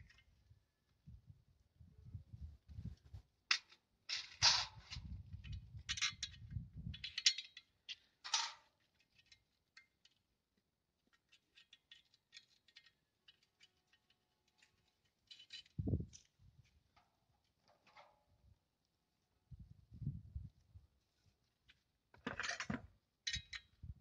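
Handling sounds of a plastic satellite-dish LNB holder being fitted with small screws and bolts by hand: scattered sharp clicks and little rattles with low dull bumps, in several short bursts separated by quiet gaps.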